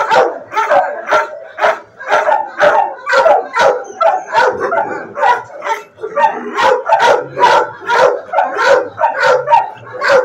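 Dogs in shelter kennels barking without a break, about two or three barks a second, with yips mixed in.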